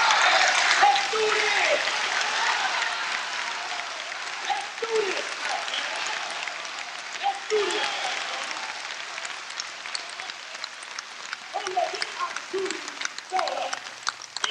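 An audience in a hall applauding and cheering, loudest at the start and slowly dying down, with a few voices calling out over it.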